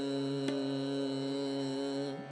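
Steady tanpura drone holding the tonic, many overtones ringing together, with a few faint string plucks.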